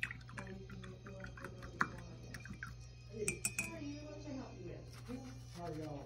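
Indistinct talk from other people in the room, with a few sharp clinks and taps like containers or utensils knocking together, one about two seconds in and a quick cluster around three and a half seconds, over a steady low hum.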